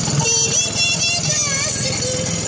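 Small boat motor running steadily under way, with a low even pulse, under voices and background music.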